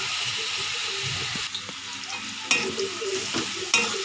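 Chicken pieces sizzling as they fry in oil in a metal kadai, stirred with a slotted metal spatula, with a few sharp clinks of the spatula against the pan.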